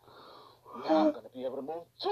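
A man's wordless, strained vocal sounds: a faint breathy hiss, then two short voiced groans.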